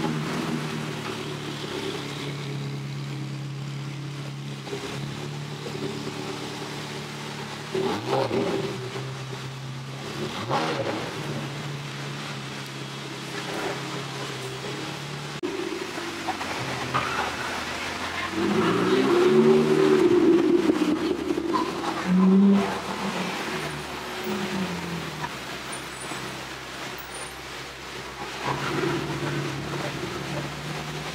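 Ferrari V8 sports cars and other cars rolling slowly past at low speed, engines running with light blips of the throttle. About two-thirds of the way through, one engine revs up and down loudly, followed by a short sharp blip.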